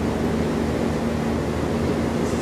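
Tour boat's engine running with a steady hum under an even wash of noise.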